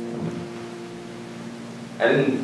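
The last of a piano chord fading away under quiet room noise.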